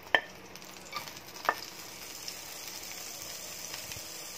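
Cucumber strips frying quietly in oil in a pan on low heat, a faint steady sizzle, with two sharp clicks against the pan near the start and about a second and a half in.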